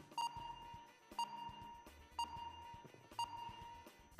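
Game-show countdown timer sound effect: a click and a steady electronic beep once every second, four times, as the round's clock runs down.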